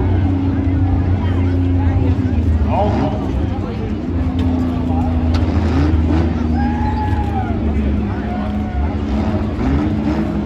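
Several demolition derby minivan engines running together with a steady low drone, revving up now and then, with a single sharp knock about five seconds in.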